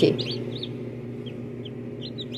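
Newly hatched chicks peeping: a scattering of short, high cheeps, most in the first half-second and a couple more later, over a steady low hum.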